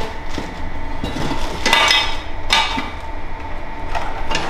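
Metal parts knocking and clinking together as they are handled in a box, several clanks with a short metallic ring, the loudest about two seconds in and another half a second later.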